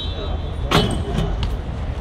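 A BMX bike knocking down hard onto paving, one sharp impact about three-quarters of a second in followed by a few lighter clicks, over a steady rumble of city traffic. A thin high squeak is heard just before the impact.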